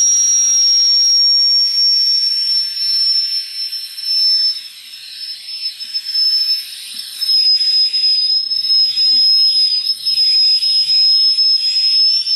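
Air rushing out of a deflating balloon through a plastic bottle's push-pull nozzle into the hole of a CD hovercraft: a loud, high, steady whistle over a hiss, its pitch sinking slightly as it goes on.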